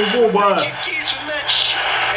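Speech: a man's voice, with a football match commentary playing from a phone's speaker.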